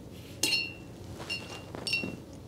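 A watercolor paintbrush tapped against the side of a glass water jar: three short clinks, each with a brief high ring, about a second in, then twice more near the end.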